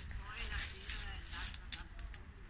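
Quiet outdoor garden ambience with faint distant voices, and a few short rustles and clicks near the end as a handheld phone moves through camellia leaves.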